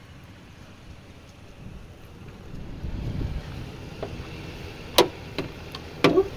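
Low rumble of wind and handling noise on the microphone, with a single sharp click about five seconds in.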